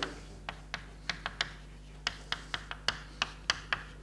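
Chalk writing on a chalkboard: an irregular run of sharp chalk taps and short scratches, about three or four a second.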